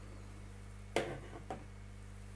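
Two soft clicks over a low steady hum, one about a second in and a fainter one half a second later: handling noise from fingers bending the hooked end of a thin wire stem wrapped in green yarn.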